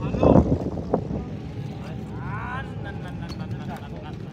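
Indistinct voices of people talking over the low, steady rumble of quad bikes (ATVs) idling, with one loud voice near the start.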